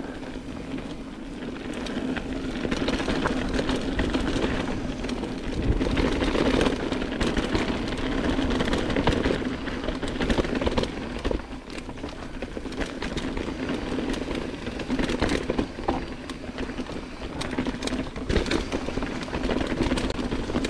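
Mountain bike riding down a dirt trail: tyres rolling over dirt and dry leaves, with many small knocks and rattles from the bike over bumps. It gets louder and quieter with the terrain and dips briefly about halfway through.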